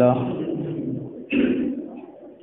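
A man's voice reciting Arabic holds a drawn-out note that fades out at the start, followed about a second later by a short breathy burst before the recitation goes on.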